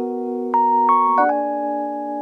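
Instrumental passage of electric piano and melodion (melodica): a held chord, with higher notes struck about half a second and a second in, and the chord changing just past a second.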